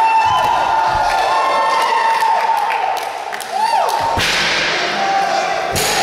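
Voices yelling in long drawn-out shouts, with a hard thud a little after four seconds and another near the end as a wrestler is slammed down onto the floor mats outside the ring.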